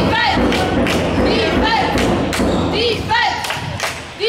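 Basketball game sounds in a sports hall: sneakers squeaking on the hardwood court in short chirps, mixed with repeated irregular thuds and a din of voices.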